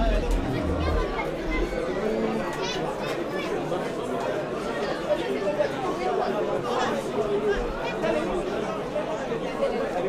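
Indistinct chatter of many voices from spectators around a football pitch, with no single voice standing out. A low rumble sits under it for the first two seconds or so.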